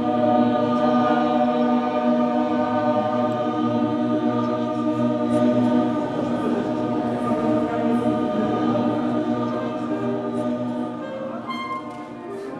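Several voices singing long held notes together as a sustained chord, easing off in loudness near the end.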